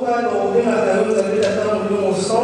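A woman's solo voice through a handheld microphone, singing long drawn-out notes that glide gently in pitch.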